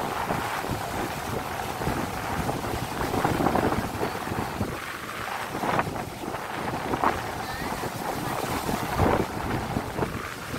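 Sea surf breaking and washing up the beach, with wind buffeting the microphone and a few louder gusts.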